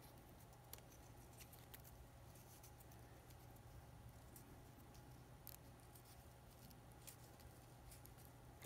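Near silence: a faint low hum with scattered soft ticks and rustles from a narrow paper strip being rolled into a spiral between fingers.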